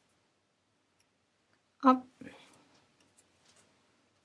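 One short spoken word, with a few faint clicks from a tapestry needle and yarn being worked through the holes of a small round basswood loom.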